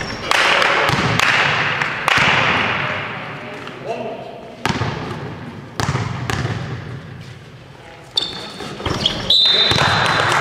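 A basketball bouncing on a sports-hall floor: single echoing bounces about a second apart, then a few seconds apart, as a free-throw shooter dribbles before the shot. Voices echo in the hall.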